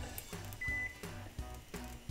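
Background music, with one short high beep a little over half a second in from the oven's electronic control as its knob is turned to 350 degrees.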